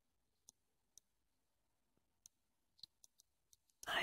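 Near silence broken by faint, scattered clicks, about a dozen at irregular intervals; a voice speaks one word just before the end.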